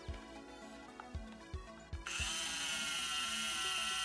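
Toy dentist's drill from a Play-Doh dentist playset whirring steadily into a clay tooth, starting about halfway through. Before it come a few light knocks from handling the plastic toy.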